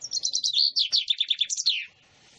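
Common chaffinch singing one complete song phrase: a fast rattling run of short notes that steps down in pitch, closed by a quick rising-and-falling flourish near the end.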